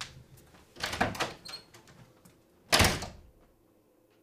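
A door: a short clatter of knocks about a second in, then the door shutting with a loud thunk just before three seconds in.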